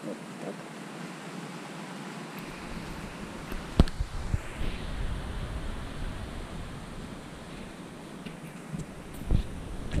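Handling noise from a handheld camera being moved about: a low rumble and rustling on the microphone, with a sharp knock about four seconds in and another near the end.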